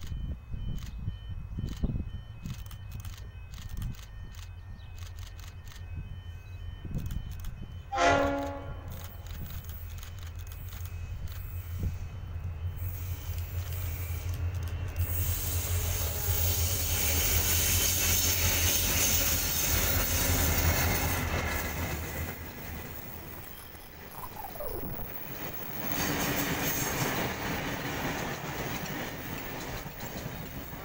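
A pair of Victorian C class EMD diesel-electric locomotives approach and pass at the head of a passenger train. A low diesel engine drone builds steadily, a short locomotive horn blast sounds about eight seconds in, and from about halfway the rush of the passing locomotives and then the rolling carriages takes over.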